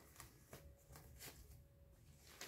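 Near silence with faint rustling from a disposable adult diaper's plastic backing and padding being handled.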